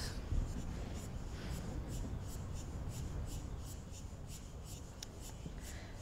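Quiet background ambience: a low rumble with faint, regular high-pitched ticks, about three a second.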